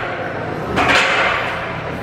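Busy gym's background noise in a large hall, with other people's voices and a steady low hum, and a short noisy rush about a second in.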